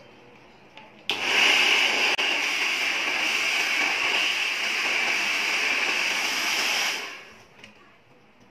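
Electric hot-air round brush switched on about a second in, its fan motor blowing steadily with a loud whirring hiss, then switched off about seven seconds in, the sound dying away over half a second.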